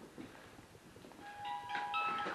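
A trigger music box starts playing about a second in: a chiming tune of several held notes at different pitches, building as more notes come in.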